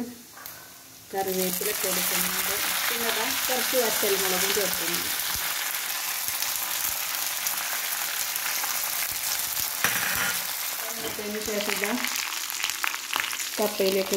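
Hot oil in a kadai bursting into a loud sizzle as curry leaves are dropped in about a second in, then sizzling steadily while the tempering for the dish fries.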